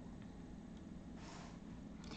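Quiet room tone with a steady low hum, and a brief soft noise a little over a second in.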